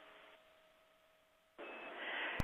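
Near silence with a faint steady hum. About one and a half seconds in, radio channel hiss comes up with a short high beep as the air-to-ground link opens.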